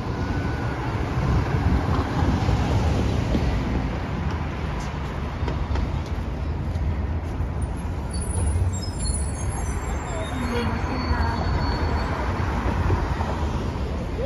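City street traffic with a steady low rumble, as an articulated city bus turns and drives past close by in the second half.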